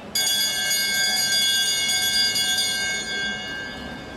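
A velodrome lap bell rings out, marking the rider's final lap. It starts suddenly and rings steadily for about three and a half seconds, fading near the end.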